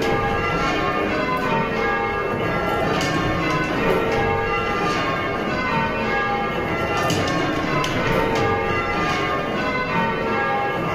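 Church bells rung full-circle in changes by ringers pulling ropes, heard from inside the ringing chamber: a steady, unbroken sequence of bell strikes, each tone ringing on into the next.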